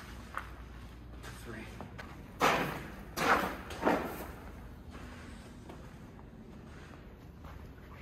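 Footsteps scuffing on a gritty concrete floor in a large, echoing room: three scrapes close together, about two and a half to four seconds in, over a faint low hum.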